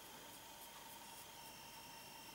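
Near silence: faint room tone, a low hiss with a faint steady hum.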